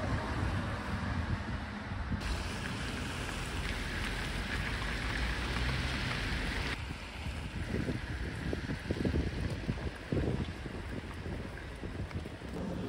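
Outdoor city street ambience: a steady hiss of traffic with wind rumble on the microphone, changing abruptly a couple of times where the shots are cut, with a few irregular low thumps in the later part.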